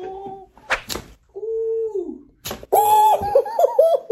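A man crying out and laughing in pain while his armpit is waxed: a held vocal 'ooh' that falls in pitch at its end, then broken high laughter. Two sharp, sudden noises come about a second and two and a half seconds in.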